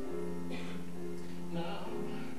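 Live orchestral accompaniment from a stage musical playing sustained held chords. The low note changes about a second and a half in.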